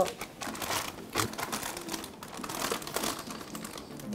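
Plastic anti-static bag around a graphics card crinkling as it is handled and unwrapped, in irregular rustles and light clicks.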